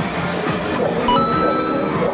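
Arcade machines' music and noise, with an electronic bell-like chime that starts about a second in and rings for most of a second.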